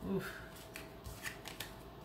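A few faint, sharp clicks of tarot cards being handled, after a short spoken "oof", over a faint steady hum.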